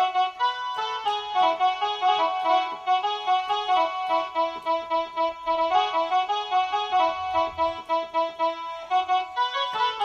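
Casio SA-21 mini keyboard playing a Koraputia Desia song melody, one quick note after another in a single line.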